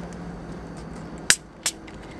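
Two plastic screw caps being twisted open on bottles of strongly carbonated water, each giving one short, sharp hiss of escaping gas, the second about a third of a second after the first.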